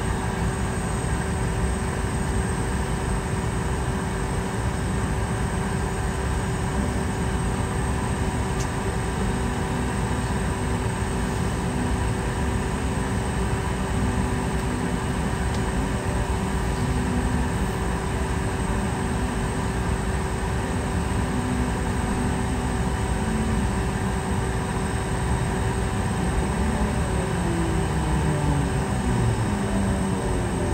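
Steady cabin noise inside a Boeing 717 standing at the gate, the cabin air running with a steady whine through it. About three seconds before the end, several rising tones come in, typical of a jet engine starting to spool up.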